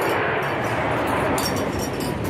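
Steady background noise of an amusement-park midway, with a few light clinks in the second half.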